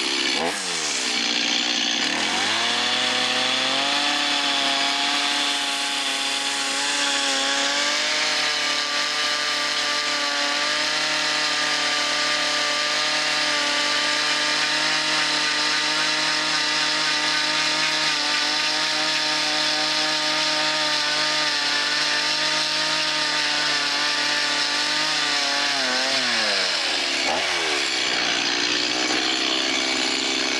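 Gas chainsaw cutting into a wood carving, held at high revs for long stretches. Its engine note drops and climbs back again about a second in and once more near the end.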